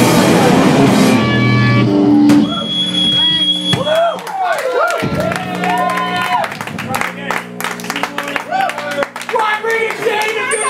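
Live hardcore punk band playing loud, distorted and dense, stopping abruptly about two and a half seconds in. After that, steady amplifier hum and ringing carry on under people's voices and shouts.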